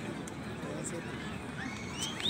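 Low background hubbub of an outdoor crowd in a pause between amplified speech, with faint high-pitched gliding calls starting near the end.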